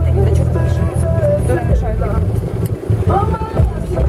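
A car engine running with a steady low rumble, under a woman talking.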